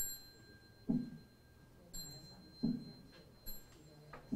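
A small Buddhist handbell (yinqing) is struck three times, each strike ringing high and clear for a second or more. It alternates with two dull drum beats, keeping time for a series of prostrations.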